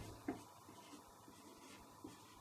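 Faint scratching of a marker writing on a whiteboard, with a soft tap near the start.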